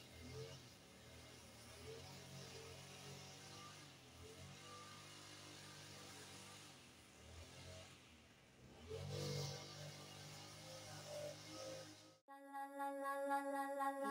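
Faint engine drone in the distance, swelling briefly about nine seconds in. Background music begins near the end.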